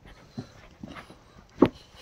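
Footsteps climbing stone steps: a few short, uneven footfalls, the loudest about one and a half seconds in.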